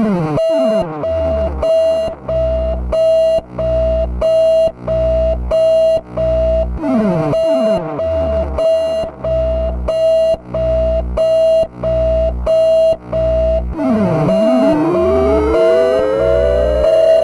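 Electronic oscillator music begins out of silence: a steady held tone under a repeating pulse of about three beats every two seconds, with deep bass throbs. Falling pitch sweeps come near the start and about seven seconds in, and a falling-then-rising sweep near the end.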